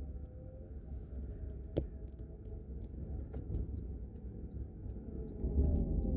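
Low road and tyre rumble inside a slowly moving car's cabin, with one sharp click about two seconds in and a faint whine that falls in pitch near the end as the car slows.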